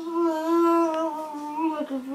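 A person humming one long held note that wavers slightly and dips lower near the end.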